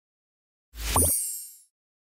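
A single cartoon sound effect a little under a second in: a deep thump with a bright hiss over it and a quick upward sweep, fading away within about a second.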